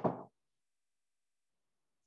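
Dead silence after the tail of a spoken word, with no room sound at all: the sound track drops out entirely.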